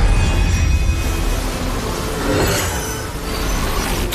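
Action-scene soundtrack: music mixed with sound effects, a steady deep rumble under a dense rushing noise, the sound design for flying blades in a fight.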